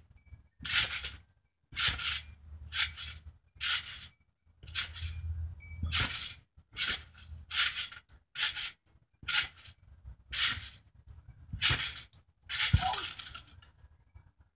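Trampoline springs jingling and the frame creaking with each bounce, in a steady rhythm of roughly one bounce a second.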